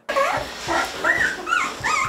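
Puppies whimpering: a string of short, high cries, each rising and falling in pitch.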